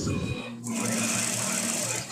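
Electric sewing machine running steadily, a motor hum with a fast, even stitching beat that starts about half a second in, heard over a phone video call.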